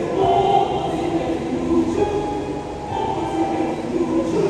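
Mixed church choir singing in harmony, holding long notes.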